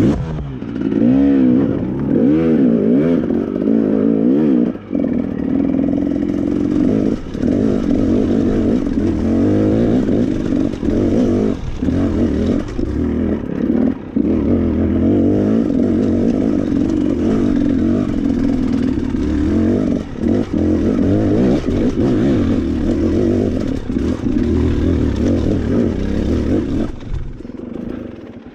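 Dirt bike engine running hard over rough ground, its revs constantly rising and falling, with brief chops off the throttle. The engine note eases off near the end.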